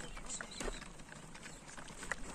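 Faint sounds of a flock of goats and sheep, with scattered light irregular clicks and ticks.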